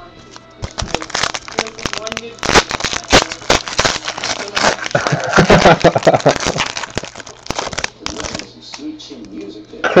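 Trading-card packs being opened and handled: a dense run of crackling and crinkling with many sharp clicks, from foil wrappers and cards.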